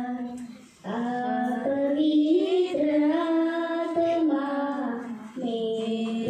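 A young girl singing solo into a microphone without accompaniment, holding long notes, with a breath pause just before a second in and another about five seconds in.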